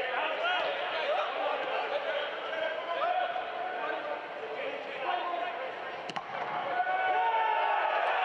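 Players' shouts and scattered voices from a thin stadium crowd at a soccer match, with a sharp knock of the ball being kicked about six seconds in.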